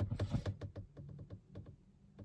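A person crying softly behind her hand: a quick, irregular run of small clicks and breaths that thins out and stops after about a second and a half.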